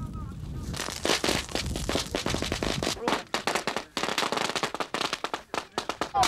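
Rapid automatic gunfire in long, dense bursts starting about a second in, then more scattered shots toward the end.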